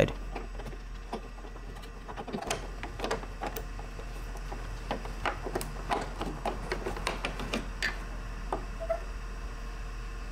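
Scattered light clicks and knocks of plastic trim and small parts being handled and pulled at a car's front fender, over a steady low hum.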